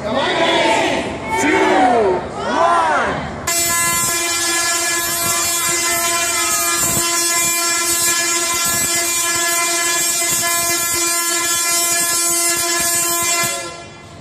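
Voices counting down, then a large Tesla coil fires with a sudden, loud, steady electric buzz. The buzz holds for about ten seconds as the sparks arc out, then cuts off abruptly.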